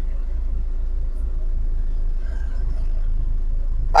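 Isuzu-engined TMT Captain E light truck's diesel engine running as the truck moves off slowly, heard from inside the cab as a steady low drone.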